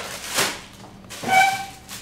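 Packaging rustling briefly as a mailer is opened, then a short high whine held on one pitch for about half a second.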